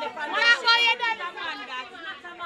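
Speech only: several people talking at once, in lively street conversation.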